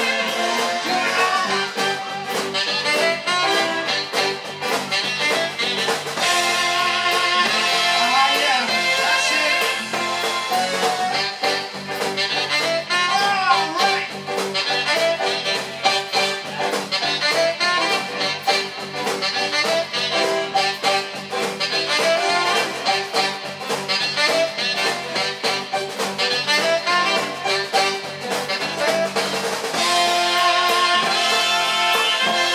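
A live band plays an instrumental passage with no singing, on saxophone, keyboard and electric guitar.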